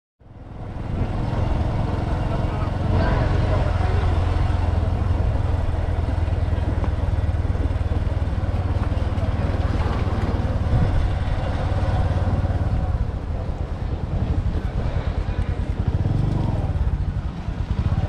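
Street ambience on a dusty town road: a steady low rumble with people's voices now and then, fading in over the first second.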